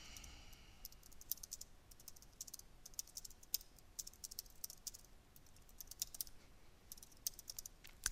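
Computer keyboard typing: faint key clicks in quick, irregular runs with short pauses between them.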